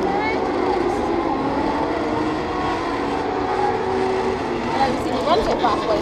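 Indistinct voices of people talking over a steady drone of vehicle engines.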